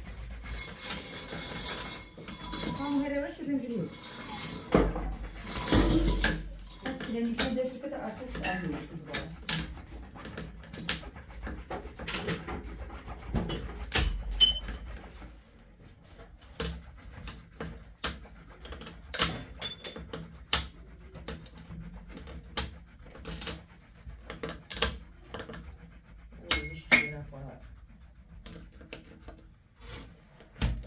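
Knife cutting and scraping at the white plastic nozzle of a sealant tube against a granite countertop: a long series of short, sharp clicks and scrapes.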